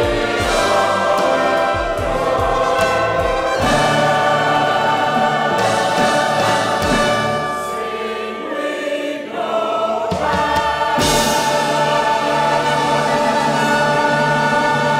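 Choir singing with a small orchestra accompanying, with low beats under the music in the first few seconds. The music eases off a little past halfway, then swells into a long held chord.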